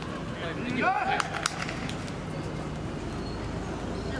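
A player's voice calling out briefly across an outdoor football court about half a second to a second and a half in, with two sharp knocks close together, over a steady low background hum.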